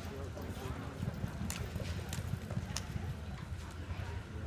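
Horse hooves thudding on arena dirt, an uneven run of dull hoofbeats with a few sharper clicks.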